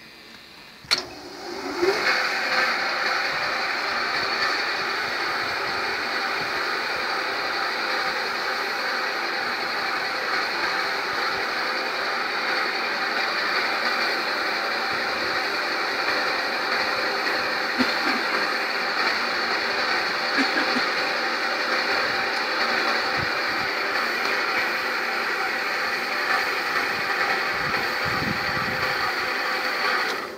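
Concrete batching plant's electric drive machinery switched on from its control panel: a sharp click about a second in, then a steady, dense mechanical hum and rattle as the plant runs, cutting off suddenly right at the end.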